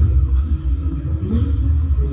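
Steady low rumble of background noise, loud and deep, with no clear rhythm or separate events.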